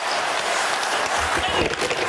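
Live ice hockey in a packed arena: the steady noise of the crowd, with scattered sharp clicks and scrapes from sticks, puck and skates on the ice.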